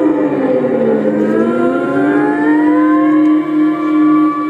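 Live music: a sustained pitched note slides down for about a second, then rises again and holds steady, sounding like a siren.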